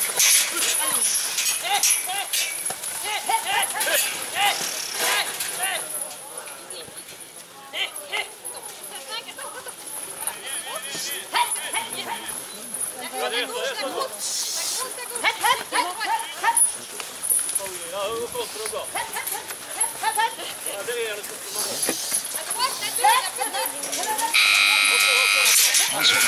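Background voices of people talking and calling out, too distant to make out, around a ranch-sorting pen. Near the end a steady pitched sound starts and gets louder.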